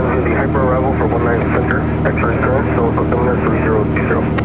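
Cessna 182's piston engine and propeller droning steadily in cruise, heard inside the cabin, with air traffic control radio speech over it.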